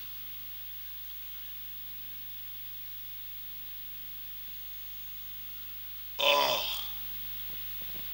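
Low steady electrical hum from the sound system in a pause between sentences. About six seconds in, one short vocal sound, falling in pitch, like a hesitation or grunt.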